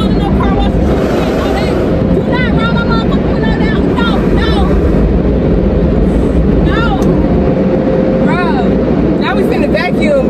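Steady loud rumble of an automatic car wash's machinery heard from inside the car's cabin, with a woman laughing and calling out over it at intervals.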